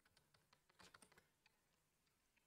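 Near silence, with a few faint computer keyboard keystrokes about a second in.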